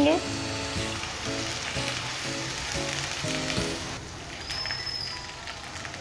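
Sliced onions and whole dried red chillies frying in hot oil in a karahi, a steady sizzle, with soft background music underneath.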